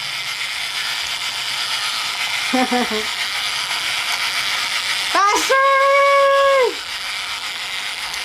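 Battery-operated toy fishing game running, its small motor turning the plastic fish pond with a steady rattling whir of gears. A person laughs about two and a half seconds in and calls out a long, held name just after five seconds.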